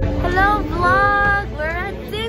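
High-pitched young women's voices calling out in a sing-song way, with several rising swoops in pitch.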